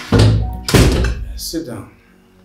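Background film music with two deep thuds about half a second apart, as an interior door is pushed shut. The sound fades out near the end.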